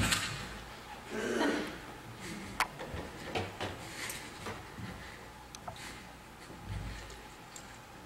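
Scattered light clicks and knocks in a quiet room, with a short vocal sound about a second in and a low thump near the end.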